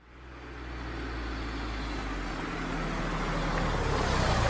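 Truck engine running steadily as a low hum, fading in from silence and growing gradually louder.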